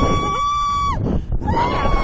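A woman screaming on a slingshot thrill ride: two long, high, held screams, the first ending about a second in and the next starting halfway through. Wind rushes over the microphone throughout.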